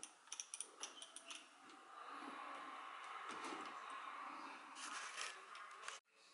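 Faint clicks and light knocks of small plastic parts of a drone remote controller being handled and fitted back together, a cluster of clicks early and another near the end, with a steady faint rustle for a few seconds in between.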